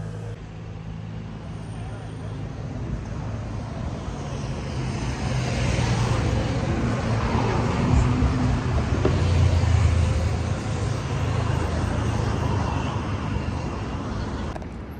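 City road traffic, with a vehicle engine hum that grows louder as it draws near, peaks about eight to ten seconds in, then eases slightly.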